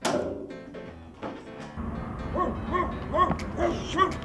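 A sudden thump at the very start, then from about two seconds in, rapid dog barking, about three barks a second, over a low steady rumble.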